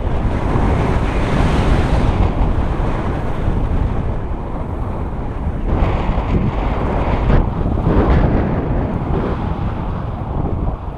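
Wind rushing over an action camera's microphone during a paraglider flight: a loud, steady roar of airflow that swells and eases, stronger near the start and again about six to eight seconds in.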